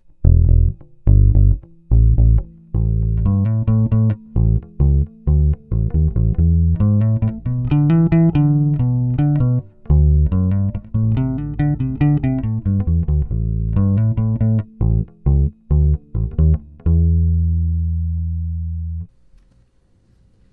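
A 2007 Squier Vintage Modified '70s Jazz Bass with flatwound strings and Duncan Designed pickups, played dry with no effects, EQ or compression, on the neck pickup alone with the tone knob all the way up. It plays a bass line of plucked notes and ends on one note held for about two seconds before it is stopped.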